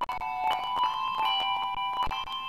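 Tuned handbells played as music: several notes struck in turn and left ringing on together in a slow, overlapping melody.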